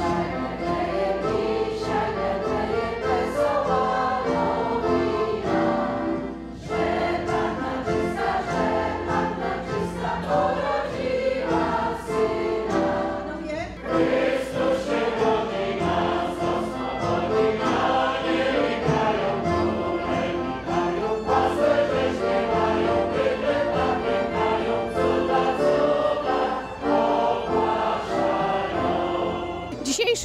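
Choir and audience singing a Polish Christmas carol (kolęda) together, accompanied by accordion and violin, with short breaks between verses or phrases about 6 and 13 seconds in.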